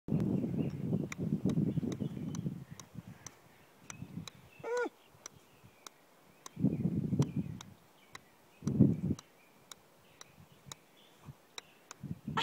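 A golf ball bounced over and over on the face of a golf club, a steady ticking of light strikes about three a second. Bursts of low rumbling noise come and go, and one brief pitched sound is heard just before the middle.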